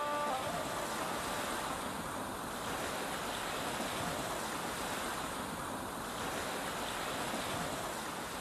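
Sea surf washing onto a beach: a steady wash of breaking waves that swells and eases slowly. The song's last note rings out faintly at the very start.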